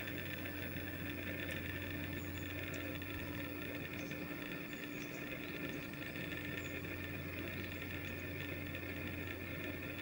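A steady machine hum with several constant tones, unchanging throughout, and a few faint high chirps.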